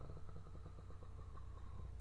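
Faint steady low hum of room or recording-chain background, with a thin high tone over it and faint fine crackling.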